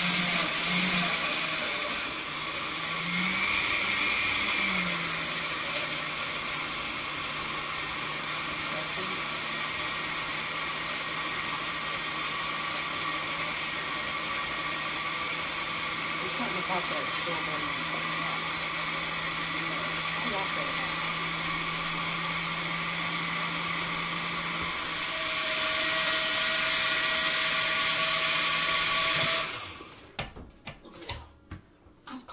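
Countertop blender running, blending a pink strawberry and strawberry-yogurt mixture with a steady motor hum. It is loudest for the first couple of seconds, settles to a lower, even run, then speeds up again for a few seconds near the end before cutting off suddenly.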